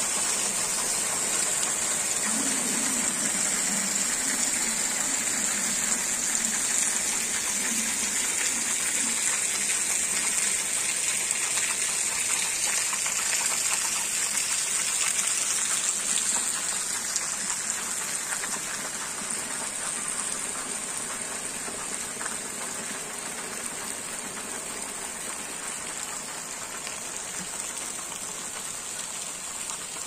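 Heavy rain falling steadily on paving, mud and leaves, a dense even hiss that grows a little quieter after about 17 seconds.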